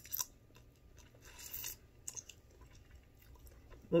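Close-up eating sounds of a person chewing crab leg meat pulled from the shell. There is a short click at the start and a brief, soft noisy patch about a second and a half in.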